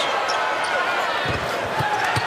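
Basketball dribbled on a hardwood court, a few bounces about two-thirds of the way through, over the steady noise of an arena crowd.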